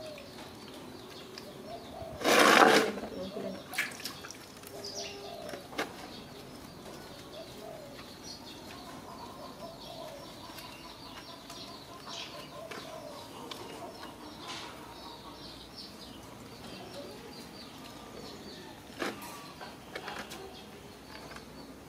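A loud splash of water in a metal basin about two seconds in, as a wet young monkey climbs out of its bath, followed by scattered small knocks and rubbing. Faint birds chirp in the background.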